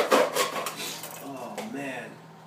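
A knife sawing through a plastic Heinz ketchup bottle: quick back-and-forth strokes that die away within the first second, then a few faint handling sounds.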